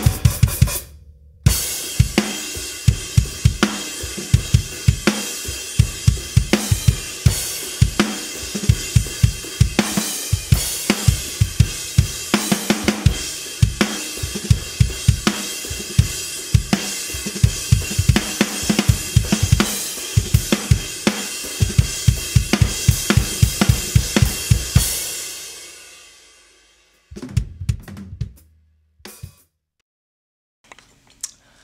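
Drum kit groove played with heavy 5B sticks, a Paiste 2002 24-inch Big Ride cymbal washing over kick drum and snare hits. The playing stops about 25 seconds in and the cymbal ring dies away over a couple of seconds, followed by a few loose hits.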